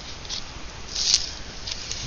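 Paper and card being handled and slid on a wooden table: a few short, faint rustles, the loudest about a second in, ending in a sharp click.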